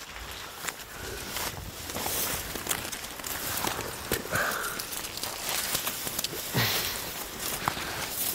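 Footsteps through dense brush, with branches and leaves rustling and twigs crackling irregularly as people push through the undergrowth.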